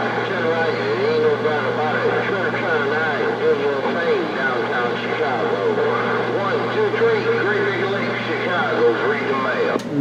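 A distant CB station's voice coming in over skip through a Galaxy CB radio's speaker, garbled and wavering under static and a steady low hum. It is the other station answering the call.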